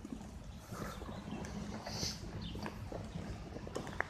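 Faint outdoor background while walking: a low, steady rumble with a few soft footsteps and light handling noise from the phone.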